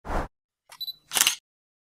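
Camera sound effects laid over the title cards: a short sharp click at the start, then about a second in a brief high beep followed by a shutter-like click.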